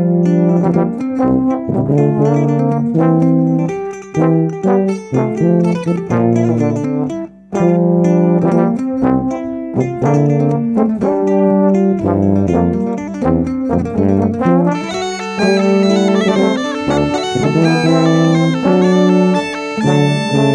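Instrumental music led by tuba and trombone, playing a lively tune over a strong bass line, with brief stops about four and seven seconds in. A brighter, higher instrument joins about fifteen seconds in.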